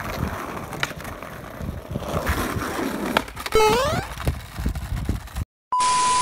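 Skateboard wheels rolling over rough asphalt, a gritty rumble with small knocks, and a short rising squeal a little past halfway. About five and a half seconds in the sound cuts out and gives way to a TV-static hiss with a steady high beep, a glitch transition effect.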